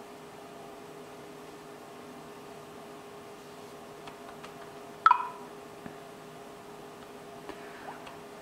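Quiet room tone with a faint steady hum. About five seconds in, a smartphone's speaker gives one short electronic beep as an app is opened by touch, and a few faint ticks come around it.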